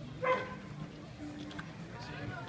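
A single short dog bark about a quarter second in, over the murmur of a street crowd.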